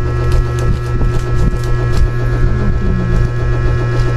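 Loud, steady electrical hum with a row of higher overtones, with a few faint clicks in the first couple of seconds.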